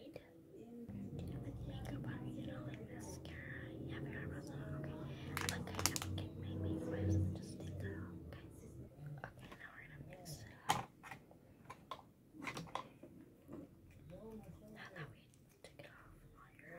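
Soft whispering and the handling of small plastic makeup jars and a packet, with a few sharp clicks and taps. A low steady hum runs through the first half.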